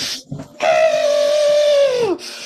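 A man's long celebratory yell, held on one pitch for about a second and a half and dropping off at the end, after a short breathy burst.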